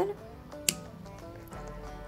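A single sharp snip of scissors cutting a strand of yarn, about two thirds of a second in, over quiet background music.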